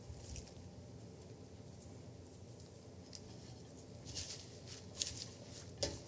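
Faint rustle of hands tossing shredded red cabbage slaw in a bowl, with a few soft crisp crackles about four to five seconds in.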